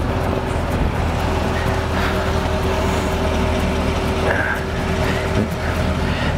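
A car engine running steadily at idle: an even, low hum with no revving.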